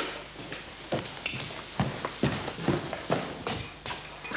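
Footsteps hurrying across the flat, about two steps a second.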